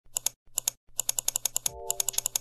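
Keyboard typing: quick keystroke clicks, a few at first with short pauses, then a fast run. A brief pitched note sounds near the end.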